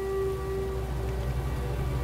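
Steady rain falling, with a low rumble underneath. A held note of the film's music fades out about a second in.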